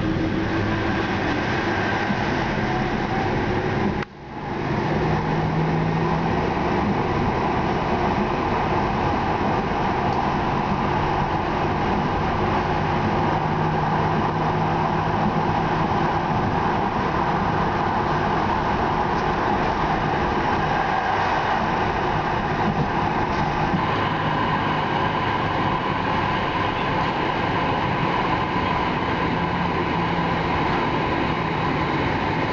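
Manchester Metrolink tram running along the line, heard from inside: a steady running noise of wheels on rails with a faint low hum. The sound drops out briefly about four seconds in, then resumes.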